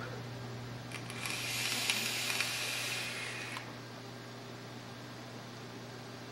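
Innokin Plex mesh-coil vape tank being fired during a draw: a steady hiss of air and vaporising e-juice starting about a second in and lasting about two and a half seconds, then stopping.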